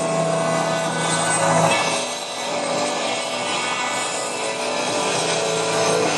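A rock band playing live on an open-air stadium stage, heard from within the crowd as a dense, blurred wash of sound. A held chord breaks off about two seconds in and comes back near the end.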